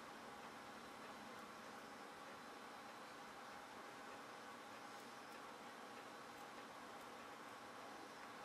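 Near silence: room tone with a steady hiss and a few faint ticks.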